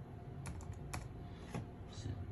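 Keys tapped on an HP laptop keyboard: a quick run of key taps about half a second in, then single taps near the middle and near the end.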